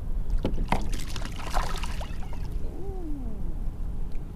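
Wind rumbling on the microphone and water sloshing around a kayak while a small hooked redfish is reeled in on a spinning rod, with a few short knocks in the first two seconds.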